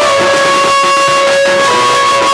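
Folk ensemble music: a melody of long held notes, changing pitch every second or so, over a few strokes of a two-headed barrel drum.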